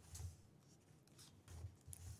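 Near silence: room tone in a pause between words, with a few faint, brief rustles about a quarter second in and near the end.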